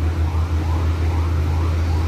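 Emergency vehicle siren, faint, in quick repeated rising-and-falling sweeps, over a steady low rumble.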